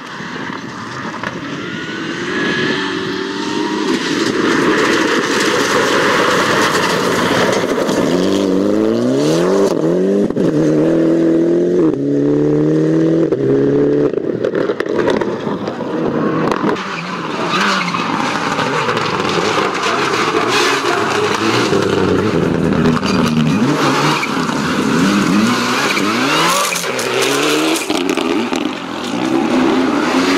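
Rally car engine at full throttle on a gravel stage, its pitch climbing and dropping sharply again and again as it shifts up through the gears, over a steady rush of tyres and gravel.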